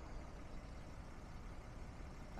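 Faint, steady outdoor background noise with a low rumble and no distinct event.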